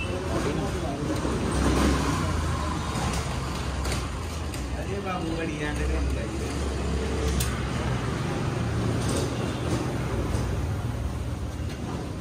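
Steady low rumble, like vehicles passing outside, with faint voices and a few sharp clicks of metal being handled.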